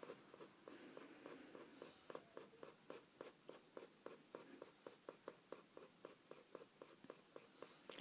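Crayola school colored pencil scratching faintly on paper in a steady run of short, quick strokes, about three to four a second: light hatching to build up fine baby hair.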